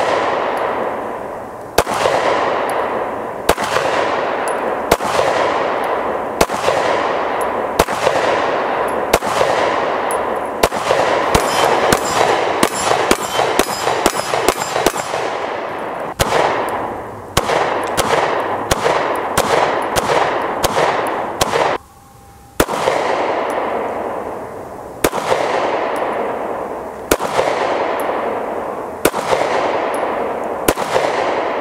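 Springfield Armory Hellcat 9mm micro-compact pistol firing a long series of shots, each with a long echoing tail. The shots come at first about a second and a half apart, then as a fast string of several shots a second around the middle, with a brief pause just after the twenty-second mark before the steady shooting resumes.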